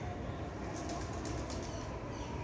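Pigeon wings flapping as birds take off from the platform: a quick run of flaps lasting about a second, starting a little under a second in, over a steady low outdoor rumble.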